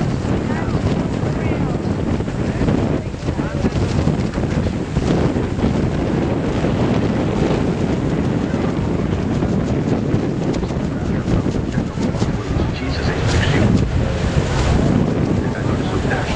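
Wind buffeting the microphone over the steady rush of Niagara's American Falls pouring onto the rocks.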